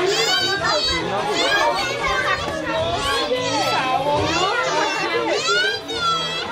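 Several women and children talking and exclaiming over one another in high-pitched voices, with faint music underneath.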